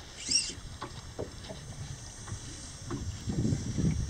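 Small waves lapping and slapping irregularly against the hull of a small boat drifting on shallow water.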